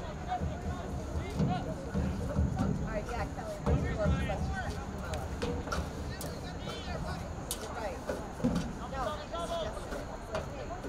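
Indistinct voices of people talking around the microphone, with several short low thumps in the first half and again near the end.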